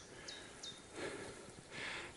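Faint, high bird chirps: three short notes, each sliding downward, in the first second, over quiet woodland ambience.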